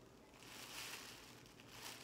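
Faint, soft sniffing at a human-hair wig held up to the nose, checking it for any smell.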